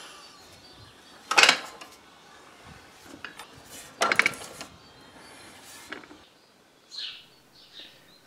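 Two sharp metallic clacks, about two and a half seconds apart, from the cam and push-rod valve gear of a homemade compressed-air engine, over faint steady background noise that cuts off about six seconds in.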